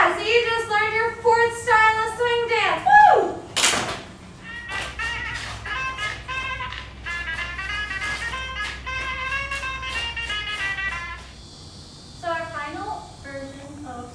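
Two women's excited voices ("Ta-da!", "Yeah! Woo!"), then a single hand clap about three and a half seconds in, followed by music playing for several seconds; a woman starts talking again near the end.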